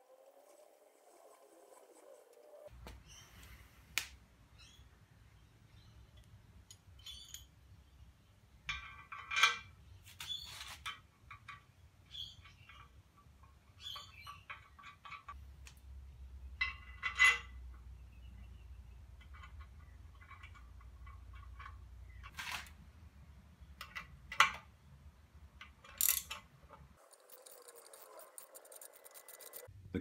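Quiet workshop handling sounds: scattered light knocks and clicks as painted cast-iron jointer parts are moved about, over a faint low steady hum, with a few short high chirps or squeaks.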